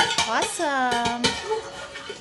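Metal ladle clanking and scraping against a stainless steel stockpot as meat sauce is scooped out, with a few sharp clinks. A pitched tone that falls steadily runs through the middle.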